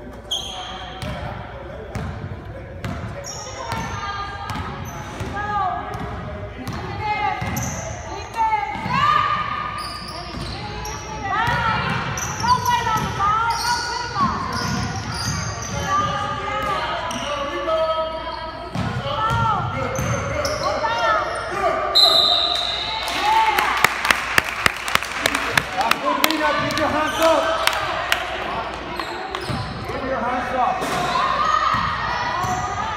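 Basketballs bouncing on a hardwood gym floor, with sneaker squeaks and voices echoing around a large gym. A short high whistle sounds about two-thirds of the way through, followed by a run of rapid sharp hits.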